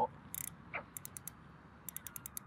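Fixed-spool carp reel being wound slowly by hand to take up slack line, giving a few light, irregular mechanical clicks.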